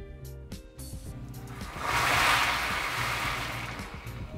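Background music, with a short splashing, hissing pour into a glass bowl of water about two seconds in, swelling quickly and fading over a second or so.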